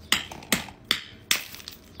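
Hammer striking a block of ice on concrete, four sharp blows in quick succession, cracking the ice.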